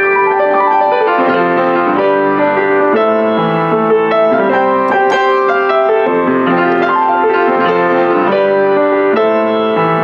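A circa-1982 Kawai CE-7N upright acoustic piano played with both hands, chords changing about once a second at an even, full volume.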